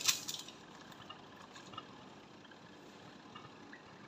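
Dry Maggi instant noodle block dropped into a pot of water, with a short sharp splash right at the start, then the water's faint steady hiss as it heats, with a few small clicks.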